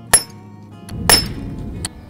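Hammerstone striking a large stone core in flint knapping: two sharp, clinking blows about a second apart, the second louder and followed by a brief ring.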